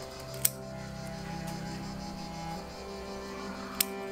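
Background music, with two sharp snips of steel bonsai scissors cutting shoots: one about half a second in and one near the end.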